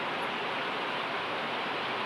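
Heavy rain pouring down, a steady even hiss.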